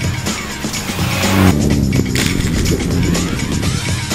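Rally car engine revving hard as the car passes, loudest about one and a half seconds in, with the revs rising and falling through the bend. Background music with a steady beat plays throughout.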